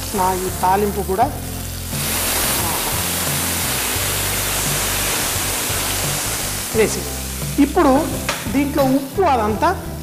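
Hot tempering oil with garlic, dried red chillies and curry leaves poured into a pot of simmering broth, setting off a loud sizzle about two seconds in that lasts four to five seconds and then dies away.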